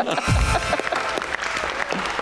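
Applause: a studio audience and the host clapping, a dense patter of hand claps.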